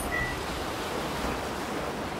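Steady, even rushing noise with no distinct events.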